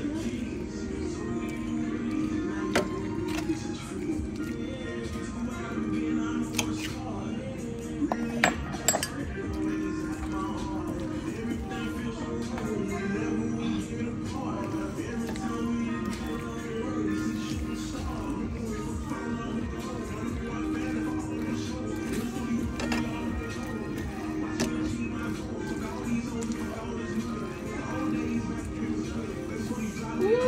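Background music plays throughout, with a few sharp clinks of a utensil against a cast-iron skillet as fettuccine alfredo is stirred and tossed.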